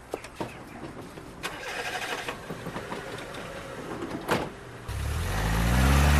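Footsteps at the start, a single knock about four seconds in, then a car engine that starts about five seconds in and runs steadily, growing louder.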